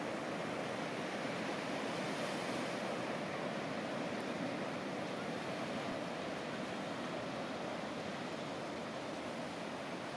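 Ocean surf breaking and washing up a sandy beach, a steady rushing wash with no single crash standing out.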